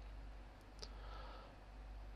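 Quiet room tone with two faint clicks less than a second in, the second one sharper.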